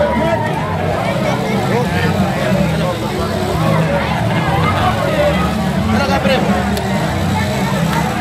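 Crowd babble from a large walking street procession: many voices talking and calling out at once over a steady low drone.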